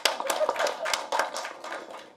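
Audience applause: many hands clapping irregularly, dying away near the end.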